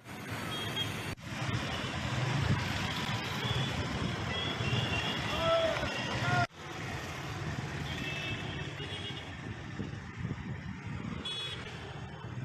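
Road traffic with background voices and short high beeps. The sound breaks off abruptly twice, about a second in and again midway.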